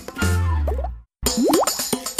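Children's TV channel jingle music ending, a brief gap of silence about a second in, then a quick rising cartoon sound effect, like a plop or boing, and the start of a bouncy tune with regular percussion hits.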